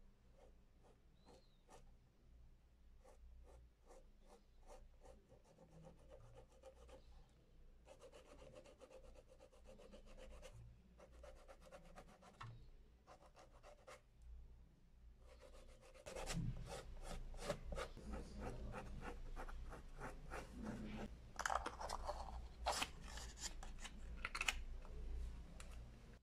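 Suede cleaner block rubbed rapidly back and forth over a suede sneaker upper, a dry scrubbing of quick repeated strokes. It is soft at first and gets clearly louder about two-thirds of the way through.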